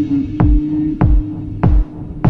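Techno track: a deep kick drum with a sharply dropping pitch beats three times, about every 0.6 s, under a steady held synth tone. From about one and a half seconds in, a bright hissing hit joins each kick.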